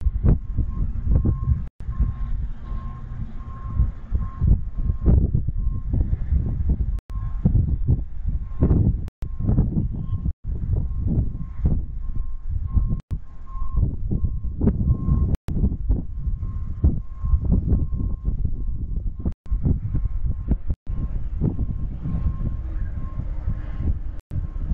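Low rumble of an approaching Amtrak passenger train, with an electronic warning tone beeping about twice a second over it, typical of a railroad grade-crossing signal. The sound drops out for an instant several times.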